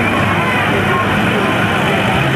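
A farm tractor's diesel engine running as it passes close by, mixed with crowd voices and parade music.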